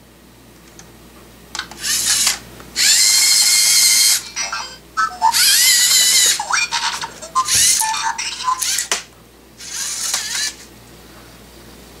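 Electronic sound effects played through the LEGO Mindstorms EV3 brick's speaker on the SPIK3R robot as its program runs: several loud bursts of about a second each, with gliding whistle-like tones and quieter gaps between them.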